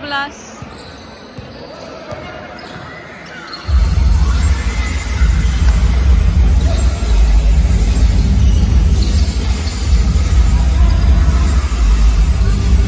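A basketball dribbled on the court floor in a large hall. About four seconds in, loud bass-heavy music starts and covers everything.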